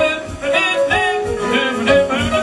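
Live jazz band playing a passage without lyrics: a lead line of short melodic notes over the band.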